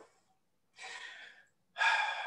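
A man draws a short breath, lasting under a second, about a second in. A rubbing noise starts near the end.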